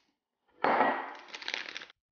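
A drinking glass handled on the table, a clinking, scraping clatter that starts suddenly about half a second in, fades, and cuts off abruptly near the end.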